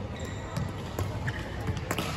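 Badminton rally: rackets striking the shuttlecock with sharp cracks, the loudest just before the end, over the thud of feet on the court and a brief shoe squeak early on.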